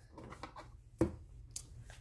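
A hand rummaging in a cardboard box and lifting out a plush toy: soft rustling and scraping, with one sharp knock against the box about halfway through.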